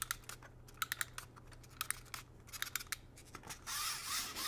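Faint, irregular plastic clicks of the Bear Fighter Zoid's wind-up spring mechanism being wound by hand. Near the end it is let go and its wind-up gearbox starts running with a steady whirr as the model walks.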